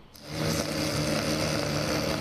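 Small gasoline engine of a handheld landscaping tool running steadily at high speed, starting about a quarter second in.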